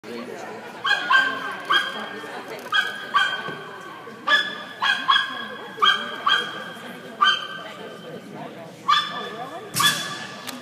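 Shetland sheepdog barking while running an agility course: about a dozen short, high-pitched barks in irregular clusters.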